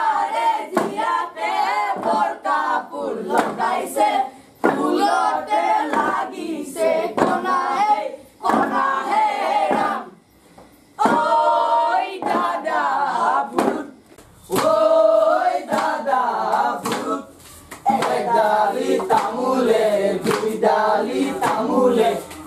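A chorus of voices singing an Assamese folk song in short phrases with brief pauses between them, with hand claps.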